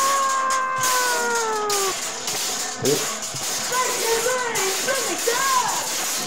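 A person's long wailing cry, falling slowly in pitch over about two seconds, followed by shorter rising-and-falling cries, over a steady hiss.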